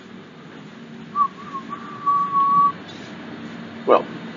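A single high whistling tone, a few short broken notes that settle into one steady note held for about a second and a half, over the low steady running hum of a train carriage.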